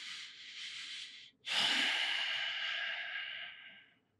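A man breathing out hard into a close microphone, twice: one long breath of about a second and a half, then after a short pause a louder, longer sigh that fades away.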